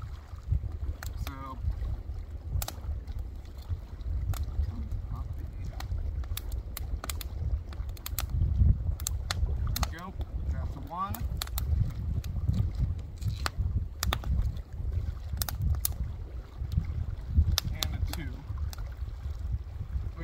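Wind rumbling on the microphone, with scattered sharp pops and crackles from a small fire of split kindling burning under a grill.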